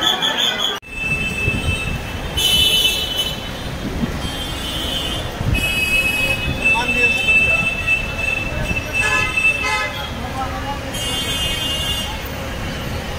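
Busy city street noise that starts abruptly about a second in, with repeated high, drawn-out squealing tones, the longest lasting several seconds in the middle.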